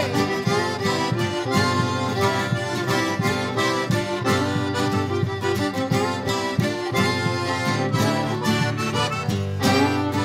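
Cajun band playing an instrumental passage, a diatonic button accordion leading over fiddle and acoustic guitar, with a steady beat.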